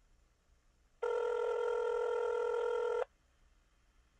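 A steady electronic tone, like a telephone ring tone, held for about two seconds and starting about a second in.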